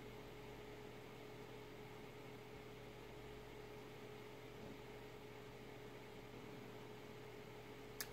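Near silence: room tone, a steady low hiss with a faint steady hum.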